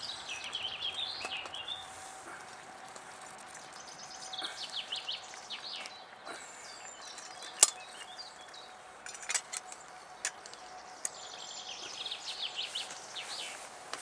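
A songbird sings short phrases of quick high notes near the start, in the middle and near the end. Between them come a few sharp metal clinks as a spoon stirs in a stainless steel pot and the lid is set back on.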